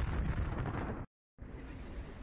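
A loud, low, rumbling explosion-like sound effect that cuts off abruptly about a second in. After a brief silence, quieter steady street noise begins.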